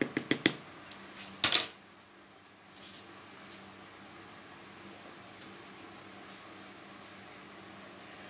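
Plastic scoop adding potting soil to a plant pot: a few light clicks, then one short, loud scrape-and-pour of soil about a second and a half in. After that only a faint steady hum while the plant is settled by hand.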